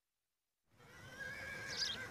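Silence, then a soft rural ambience fades in a little under a second in, with a horse whinnying.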